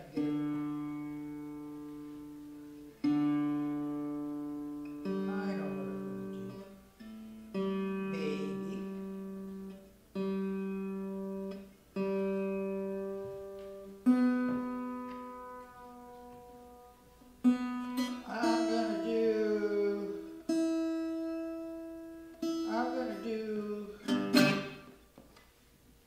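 Acoustic guitar being tuned: single strings plucked one at a time, each left to ring and fade over a couple of seconds while the tuning pegs are turned. In the second half some notes slide in pitch.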